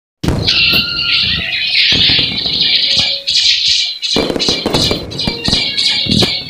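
Loud music from an animated action series' soundtrack, mixed with the show's sound effects, including several sharp hits.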